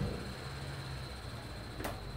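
Handling sounds as a ruler is fetched and picked up: a soft thump at the start and a sharp click near the end over a low, steady room hum with a faint high whine.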